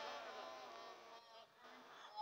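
Near silence: a pause in the amplified preaching, with only faint, barely audible traces.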